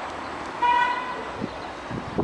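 Diesel locomotive horn giving one short blast of about half a second, a single bright note, over steady station background noise.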